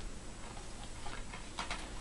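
Quiet room hiss with a few faint, scattered ticks.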